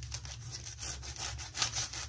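A kitchen knife sawing back and forth through a paratha roll wrapped in butter paper on a wooden chopping board, in a run of short rasping strokes.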